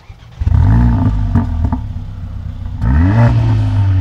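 Mercedes-AMG CLA 45 S turbocharged four-cylinder engine, stationary, revved twice: one sharp rise about half a second in and another near three seconds, running steadily in between. Its exhaust note is damped by the petrol particulate filter (OPF).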